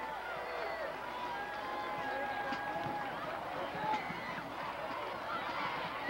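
Football crowd in the stands, many voices shouting and calling out at once, with a few long held calls.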